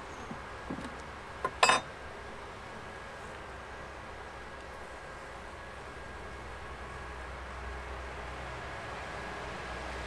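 Metal hive tool prying a frame loose in a wooden nuc box: a few light clicks, then a loud sharp snap about one and a half seconds in, over a steady low background noise.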